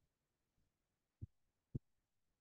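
Near silence with two brief, faint low thumps about half a second apart, the second a little louder.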